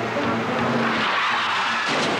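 Car horn, then tyres screeching as a car skids, ending in a sharp hit just before the end: the sound of a pedestrian being run down.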